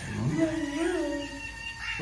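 A short, high-pitched vocal sound that wavers up and down in pitch for about a second, like a coo or a meow.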